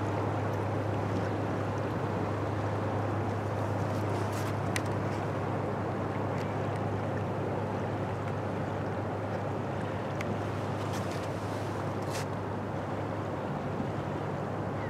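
Steady low drone of the lake freighter Joseph L. Block's diesel engines as it passes, under a constant rush of wind and river water, with a few faint high ticks.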